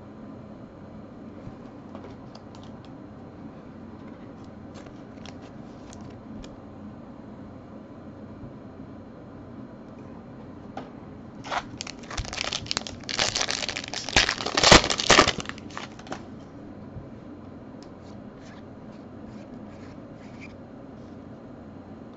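A foil trading-card pack wrapper being torn open and crinkled in the hands, a loud crackling stretch of about four seconds around the middle. Before and after it, faint light clicks of cards being handled.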